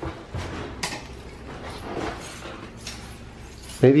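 Plastic bubble-wrap rolls crackling and knocking as they are shoved against an elevator's doors, with a sharp crack about a second in, over a low steady hum.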